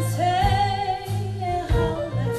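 A woman singing a Christmas song into a microphone with a live band, acoustic guitar and low bass notes underneath.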